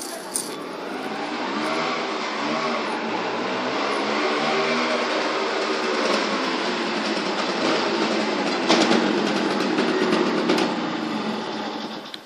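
A motor vehicle engine running steadily, growing louder over the first couple of seconds and dropping off sharply near the end.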